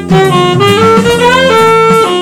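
Jazz saxophone playing a line of quick notes that climbs to a held note near the end, over walking electric bass and drums.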